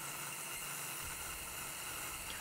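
A faint steady hiss with no clear machine sound in it.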